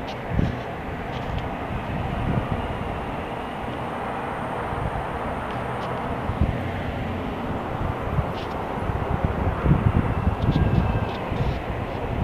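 Steady background hum and hiss, with light clicks and rustles of stiff plastic basket-weaving strips being handled, more frequent toward the end.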